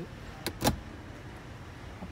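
Two short plastic clicks about half a second in, the second one louder: the hinged centre armrest lid of a Mahindra XUV500 being shut.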